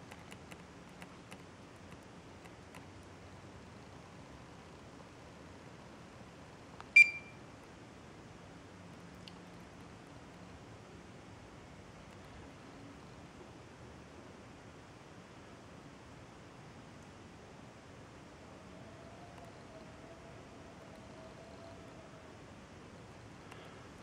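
A single short electronic beep about seven seconds in, from the LTL Acorn 5210A trail camera's keypad as a button is pressed, over faint room hiss. A few light clicks of handling and button presses come near the start.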